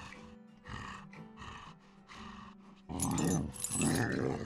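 Music with a cartoon werewolf growling and snarling, loudest in the last second.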